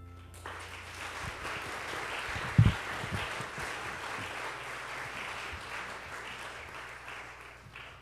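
Church congregation applauding for about seven seconds after a song, dying away near the end. About two and a half seconds in, a loud low thump as a handheld microphone is knocked while being put back in its stand.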